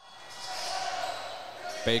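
Gymnasium game sound fading in: a basketball being dribbled on a hardwood court under a steady hall noise. A commentator's voice comes in near the end.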